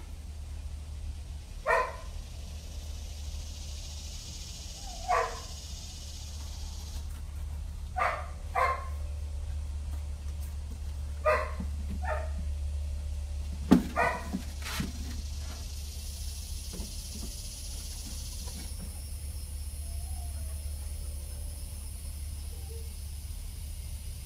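A dog giving about seven short, single barks at irregular intervals, a second to a few seconds apart, over a steady low hum. A sharp knock comes just before the last bark.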